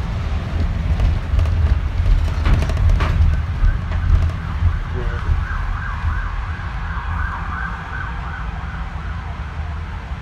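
Steady low engine and road rumble inside a moving bus, with a few knocks and rattles about two to three seconds in. Midway through, a siren wavers for about three seconds.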